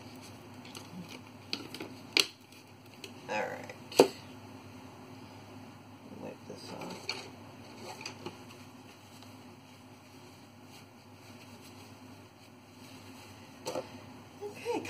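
Plastic paint bottles being handled on a table: a couple of sharp clicks and knocks, the loudest about four seconds in, as a bottle is capped and set down, then low room noise.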